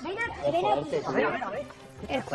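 Speech only: voices talking in a reality-TV clip that is being played back.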